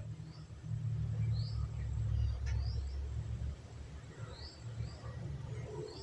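A few faint, short rising bird chirps in the background, over a low rumble that fades after about three and a half seconds, with one light click about two and a half seconds in.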